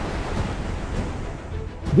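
A large wave surging: a steady rush of water noise with a low rumble, easing off a little near the end, with background music underneath.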